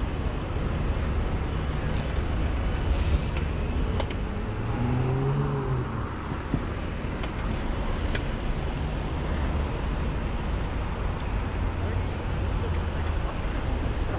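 City street traffic: a steady low rumble of cars passing through a road junction, with faint voices of passers-by.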